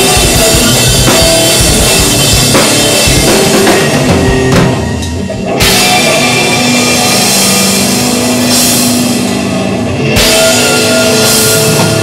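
A rock band playing loud and live, with the drum kit prominent. The sound drops briefly about five seconds in, then the full band comes back in.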